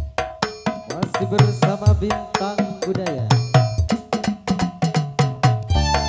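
Live Javanese gamelan-style percussion: hand drums and small tuned gongs struck in a fast, even beat of about four strokes a second.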